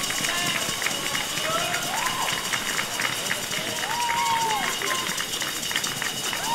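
Dancers' heeled shoes clicking and shuffling as many people walk across a wooden ballroom floor, over a crowd murmur, with a few drawn-out calls from the audience.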